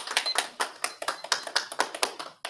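A small audience clapping, with the individual hand claps distinct and irregular.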